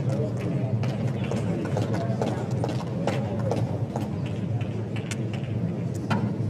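Low murmur of voices from a tennis stadium crowd, with scattered light clicks and knocks.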